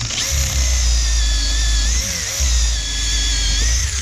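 Cordless drill spinning a rubber eraser wheel against a boat hull, stripping off old keel-guard adhesive: a steady high motor whine over a heavy low rumble from the wheel rubbing, which drops out briefly about halfway through.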